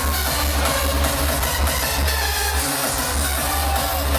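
Hardstyle electronic dance music played loud over a festival sound system, driven by a heavy repeating kick-drum beat; the bass drops out briefly a little under three seconds in.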